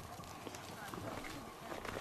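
Goat hooves and footsteps on stony ground, a scatter of small clicks and knocks, under faint, indistinct voices.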